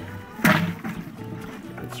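One sharp knock about half a second in, a hand tapping the thin sheet of ice frozen over the water in a plastic bucket, with a few lighter taps after it. Steady background music runs underneath.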